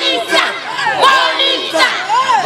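A crowd of football supporters shouting and cheering together in celebration of a trophy win, many voices overlapping.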